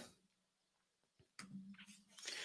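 Near silence: room tone, with a couple of faint short clicks about a second and a half in.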